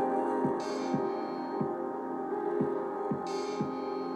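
A chill hop beat played from an Akai MPC Live II: mellow sustained chords over a kick drum hitting about twice a second. A soft swell of cymbal-like noise comes in twice, near the start and near the end.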